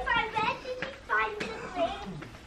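Indistinct voices, among them a child talking, in a few short high-pitched phrases, with a brief click about one and a half seconds in.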